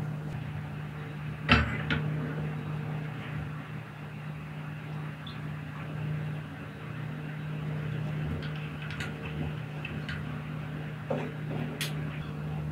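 A stainless steel pot is set down with a sharp clunk about a second and a half in, followed later by a few light clinks, over a steady low hum.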